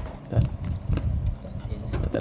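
Cardboard tablet box and its cardboard insert being handled on a wooden table: a few knocks and scrapes, the loudest about half a second in and again about a second in.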